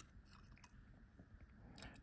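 Near silence, with a few faint small clicks of a metal watch-hand remover working under the hands of a wristwatch.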